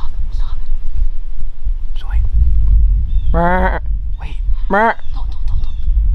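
Wind rumbling on the microphone, with two short, wavering bleat-like calls about three and a half and five seconds in.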